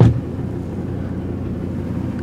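Diesel engine of a Hongyan Genlyon C500 truck idling steadily, heard from inside the cab, with one short knock right at the start.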